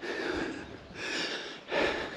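A man breathing hard while walking, heard as three short rushes of breath close to the microphone in two seconds.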